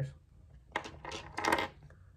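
Small plastic action-figure hands clicking and clattering against a hard tabletop in several quick handlings, mostly about a second in.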